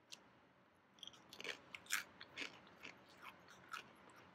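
Crispy cauliflower snack being bitten and chewed close to the microphone: a faint, irregular run of sharp crunches that starts about a second in.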